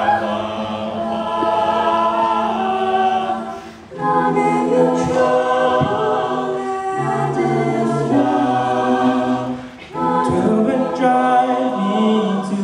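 Mixed-voice a cappella group singing a hymn arrangement, a female lead singing into a handheld microphone over sustained backing harmonies. The sound drops briefly twice, between phrases, a little before four seconds in and again near ten seconds.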